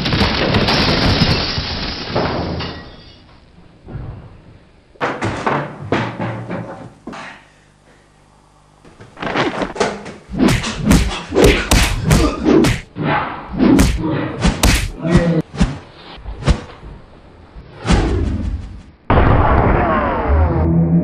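A scuffle: a run of thuds and bangs, thickest in the second half, with voices and music mixed in.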